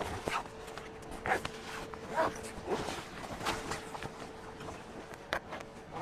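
Tent fabric rustling and knocking as an awning sidewall is fed by hand into the groove of the awning's aluminium rail, in short scattered sounds about once a second over a faint steady hum.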